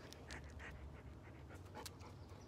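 A dog panting faintly, with a few soft short clicks over a low steady hum.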